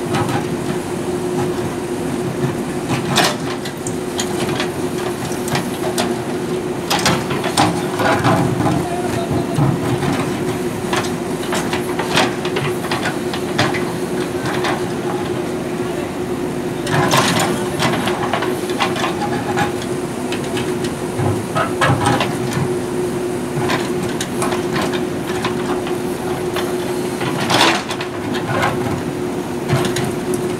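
JCB backhoe loader's diesel engine running steadily under hydraulic load with a constant hum, while the backhoe bucket scrapes and clanks through gravelly dirt. The loudest clanks come a few seconds in, around the middle and near the end.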